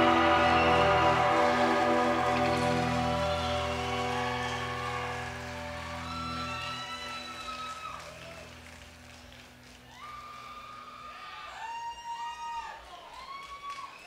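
A rock band's held closing chord ringing out and slowly fading over about seven seconds, followed by quieter short high gliding tones.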